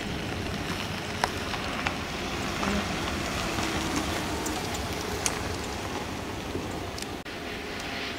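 A steady noisy hiss with a few light, sharp clicks of a metal tool against the hive's wooden frames.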